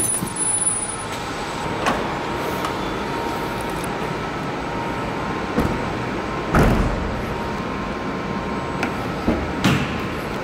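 Steady hum and hiss of a parking garage with a faint steady tone, broken by a few short knocks and a louder thump about six and a half seconds in, and a couple of clicks near the end as a car door is opened.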